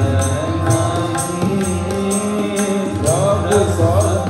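Sikh kirtan: harmonium playing sustained chords while tabla strokes keep a steady beat of about two a second, and a man's voice comes in singing about three seconds in.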